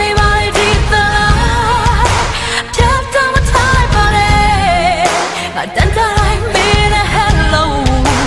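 Female vocalist singing a Burmese-language pop ballad with a live band, her sustained notes wavering in vibrato over keyboard and a steady drum beat.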